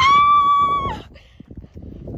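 A woman's voice holding one high, steady note for about a second, a gleeful shout that drops away at the end. Wind rumbles on the microphone underneath.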